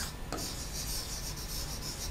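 A stylus rubbing steadily across the glass screen of an interactive flat panel as a word is handwritten on it.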